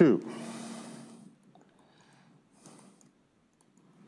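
A man's brief wordless vocal sound: a pitch that slides sharply down into a held, breathy tone lasting about a second. After it come a few faint ticks of a stylus writing on a tablet screen.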